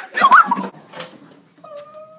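A person's high-pitched squeal, its pitch rising and falling, in the first half second, then a short, thin, steady whine near the end.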